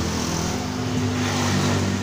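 A steady engine-like motor drone with a low hum, swelling slightly toward the end.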